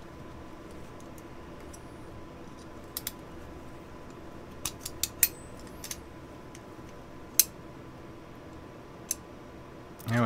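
Sparse small metal clicks and taps from the steel parts of an M1A (M14-type) trigger group being handled and fitted together: two about three seconds in, a quick cluster around five seconds, and the sharpest one a little past seven seconds, over a faint steady hum.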